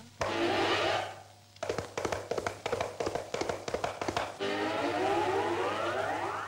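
Old film soundtrack music with comic effects: a short falling tone, then a run of quick irregular taps lasting about three seconds, then a long tone that slides steadily upward near the end.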